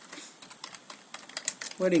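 Computer keyboard typing: a quick, irregular run of about ten keystrokes as a short name is typed in.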